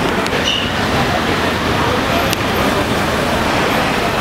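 Outdoor chatter of a group of people over a steady rush of vehicle noise, with a sharp click about two seconds in.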